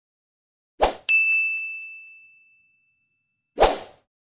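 Outro sound effects: a short rush of noise, then one bell-like ding that rings out and fades over about a second, then another short rush of noise near the end.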